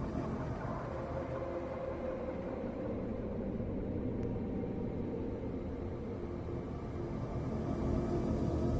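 A steady, low rumbling drone from the outro sound bed of an edited video, with faint sustained tones in it. It grows slightly louder near the end.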